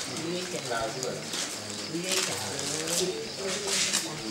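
A dove cooing, with a group of people talking and greeting one another close by.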